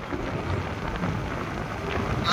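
Road and wind noise inside a moving car on a highway: a steady low rumble with an even hiss.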